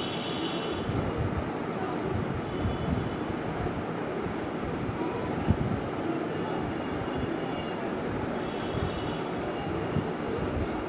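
Steady low rumbling background noise, with faint high tones coming and going and a single brief tick about five and a half seconds in.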